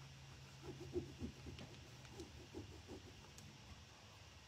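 Faint, repeated scratchy strokes of a burnishing tool rubbing an IOD transfer sheet down onto a canvas panel, over a steady low hum.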